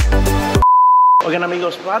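A single steady electronic beep, one pure tone about half a second long and the loudest sound here, between a music track that cuts off just before it and a man's voice that starts right after it.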